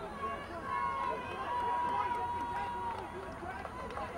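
Voices of players and spectators at an outdoor soccer game: scattered, overlapping talk and calls, with a long steady tone held for about two seconds starting just under a second in.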